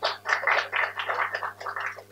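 A small group of people clapping, the single claps distinct and quick, tailing off near the end.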